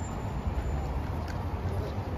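Outdoor city street ambience during a walk: a steady low rumble with faint, indistinct voices of passers-by and a couple of light clicks.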